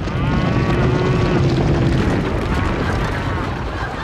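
Cartoon cattle-stampede sound effect: a loud, dense rumble of hooves with cattle mooing, including one long moo near the start. The rumble fades toward the end.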